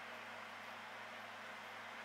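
Quiet room tone: a steady hiss with a faint low hum and no distinct events.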